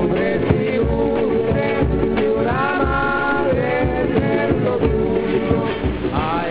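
Background music with a singing voice holding long, wavering notes over a low, regular beat.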